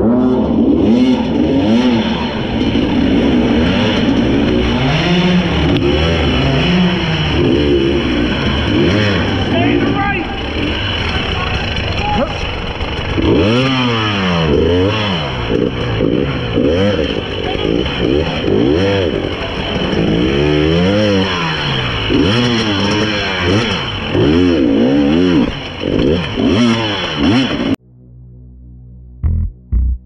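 Dirt bike engine revving up and down over and over as the throttle is opened and closed in short bursts on a slow, technical trail. The sound cuts off suddenly near the end.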